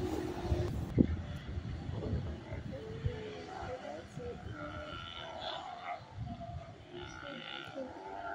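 Steller sea lions on a rookery rock roaring, many irregular calls overlapping, heard from a clifftop high above, with wind and breaking-surf noise underneath.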